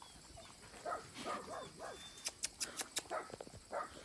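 A dog snuffling at the ground and crunching dry kibble, faint, with a quick run of sharp crunches about halfway through.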